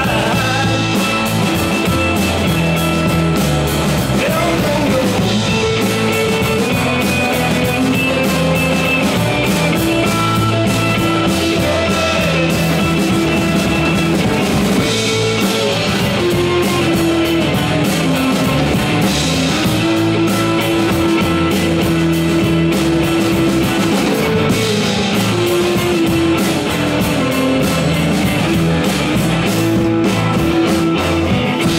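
A live rock band playing: acoustic guitar, electric guitars, bass guitar and drum kit, at a steady loud level with held guitar notes over the beat.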